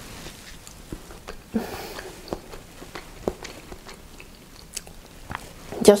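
A person chewing a mouthful of braised scallop, with soft wet mouth clicks and smacks picked up close on a clip-on microphone.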